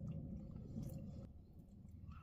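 Faint, soft chewing of a mouthful of rehydrated biscuits and gravy, with a few small crunches from undercooked bits of biscuit.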